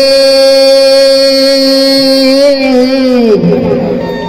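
A woman singing into a handheld microphone: one long held note that slides down and breaks off about three seconds in.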